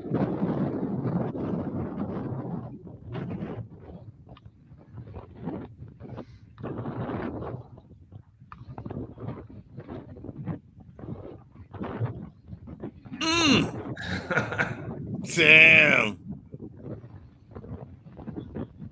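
Men shouting excitedly three times in quick succession near the end, while a hooked fish is being fought and is pulling line out. Before that there is a rushing noise for the first couple of seconds, then scattered quiet voices.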